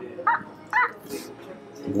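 A knife and fork squeaking twice in short, sweeping squeals against the plate while cutting through a hamburger steak.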